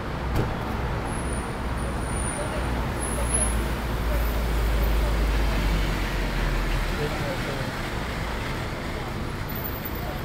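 City street traffic noise, with a low vehicle engine rumble that swells in the middle and drops away about seven seconds in.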